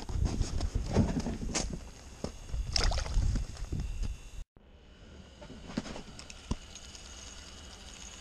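Wind buffeting the microphone, with handling knocks and clicks, on open lake ice. After an abrupt break about halfway through, a quieter steady hiss with a faint high whine and a few light clicks.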